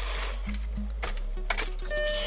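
Car key turned in the ignition to the on position: a few light clicks and key jingles about one and a half seconds in, over a low steady hum.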